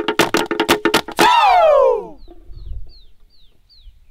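Traditional Fijian chant accompaniment: quick, rhythmic percussive strikes under chanting voices, closing about a second in with one loud, long vocal cry that falls steadily in pitch. After it a bird chirps faintly five times, short high notes that each drop in pitch.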